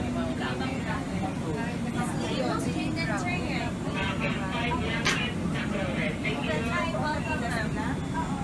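Indistinct chatter of many passengers crowded together in an airliner aisle, over a steady low hum. A brief sharp click about five seconds in.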